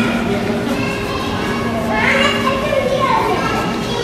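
Background chatter of visitors, children's voices among them, in a busy indoor hall, over a steady low hum. A child's voice rises above it about two seconds in.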